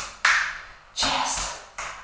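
Body percussion: two sharp hand hits on the body about three-quarters of a second apart, each trailing off, with a woman's voice calling along to the beat.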